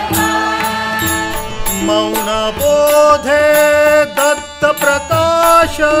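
Devotional bhajan music: a harmonium playing held melody notes over a steady tabla rhythm, between sung lines of the verse.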